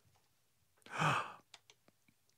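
A person's sigh: one breathy exhale about a second in, lasting about half a second, followed by a few faint clicks.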